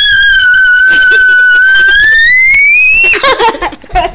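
A girl's long, loud, high-pitched scream. It holds one pitch for about two seconds, then rises and breaks off about three seconds in, followed by short broken vocal sounds.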